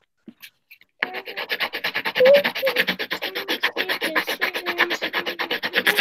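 Coloured pencil scribbled fast back and forth on paper close to a video-call microphone, colouring in a background: a dense run of quick scraping strokes, many per second, starting about a second in.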